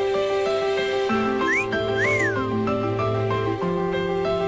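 Music of held chords over a bass line, with a wolf whistle laid over it about a second and a half in: a short rising note followed by a rise-and-fall.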